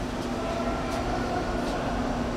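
A steady mechanical hum and low rumble, unbroken throughout, with faint voices beneath it.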